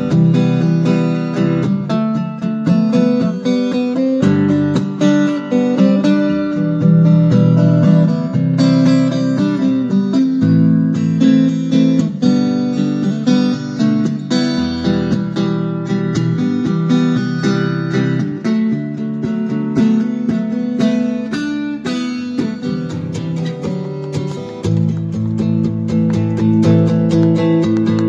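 Taylor 712 acoustic guitar, plugged into an acoustic amplifier, playing a continuous instrumental piece of chords and melody notes.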